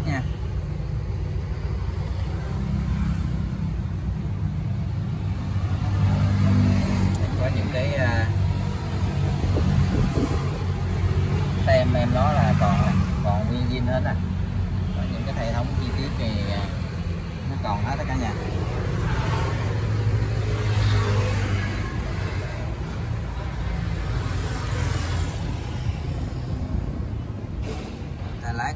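Kubota L1-33 tractor's diesel engine idling steadily.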